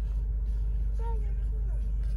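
Steady low rumble of a car idling, heard from inside the cabin, with a faint voice about halfway through.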